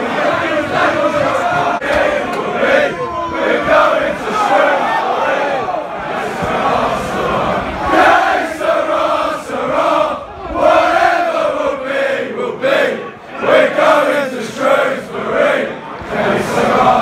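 Football supporters in a stadium stand chanting and singing together loudly.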